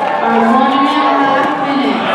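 A long, drawn-out yell held for well over a second, rising slightly in pitch and then sagging, over the hall's crowd chatter.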